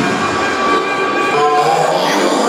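A train sound effect with a held, multi-tone train horn, played loud over the sound system as part of the dance routine's music mix.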